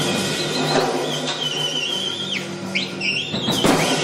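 Free-improvised saxophone playing a high, screaming altissimo line that holds and wavers, then swoops down and back up, over loose drum-kit playing with scattered hits, the strongest about three and a half seconds in.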